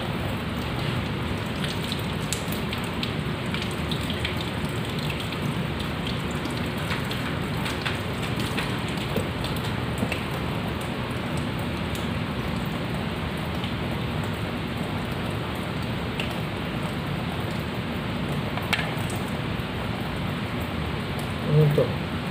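Tap water running in a thin, steady stream and splashing into a pot and sink, with small scattered ticks of handling. A brief louder sound comes near the end.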